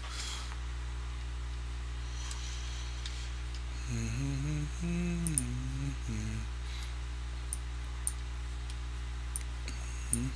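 A man hums a few wandering notes with his mouth closed for about two and a half seconds, over a steady low electrical hum. A few faint clicks come near the end.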